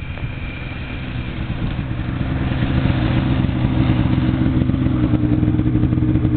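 Snowmobile engine running; it grows louder about two seconds in, then holds at a steady, even pitch.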